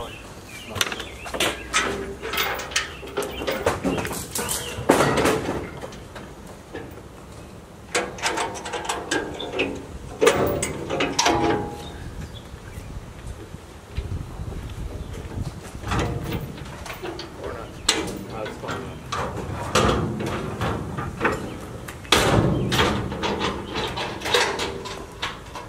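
Indistinct voices talking among workers, with scattered knocks and clunks of wooden furniture being carried and set down on the lawn.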